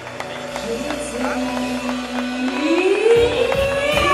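Live concert music: a held low chord for the first seconds, then a female singer's voice slides upward and the full band with drums comes in about three seconds in.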